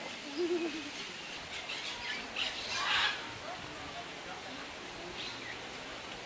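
Birds calling and chirping outdoors, loudest about three seconds in, with a short low warbling sound near the start.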